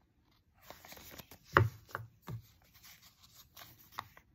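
Paper envelopes flipped through one by one by hand: scattered soft rustles and short slaps of paper against paper, the loudest about one and a half seconds in.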